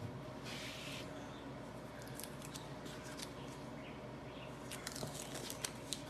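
Masking tape being peeled off freshly cap-painted wooden arrow shafts: faint crinkling and scattered small ticks, more of them near the end, over a low steady hum.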